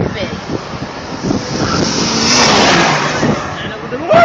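Car engine with road and tyre noise, building to its loudest about two to three seconds in over a steady low engine note.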